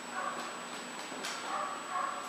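A dog whining softly in three short bursts.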